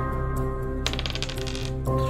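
Dice rattling and tumbling on a table for about half a second, a damage roll, over steady background music.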